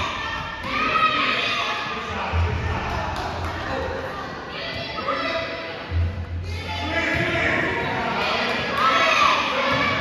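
Voices calling out over a basketball thudding on a hardwood gym court, with two heavier low thuds a few seconds apart, all echoing in a large gym.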